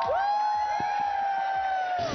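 Several voices letting out a long, high shout together. They come in one after another, hold the note for about two seconds and stop together at the end.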